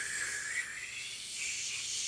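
A person imitating a jet airliner with a long, breathy whoosh made by mouth, rising slightly in pitch.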